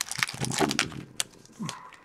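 Crinkling of a foil hockey-card pack wrapper and rustling of the cards as they are slid out of the just-torn pack, with a brief hum from a person about half a second in and a sharp click just after one second.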